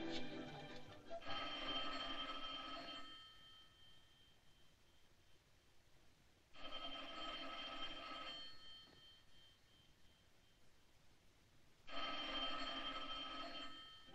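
A telephone bell rings three times, each ring about two seconds long and about five seconds apart, and no one answers.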